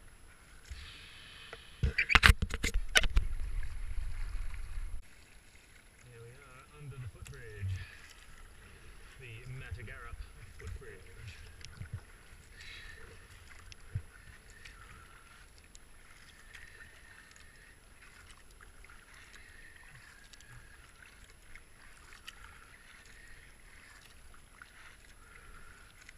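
Kayak being paddled, water sloshing at the hull and soft thumps of the paddle strokes about once a second. About two seconds in, a burst of loud knocks and rumble lasts about three seconds.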